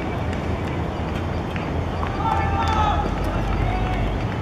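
Spectators shouting encouragement at hurdlers, with one long held shout about two seconds in and shorter calls near the end, over steady open-air noise.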